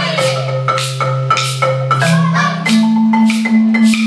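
Several marimbas played together in an ensemble: a steady beat of struck wooden-bar notes, about two to three strokes a second, over a held low bass note that steps up in pitch partway through.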